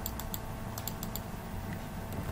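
Computer keyboard keys being pressed as numbers are typed into a spreadsheet cell: two short runs of quick clicks in the first second or so, over a low steady hum.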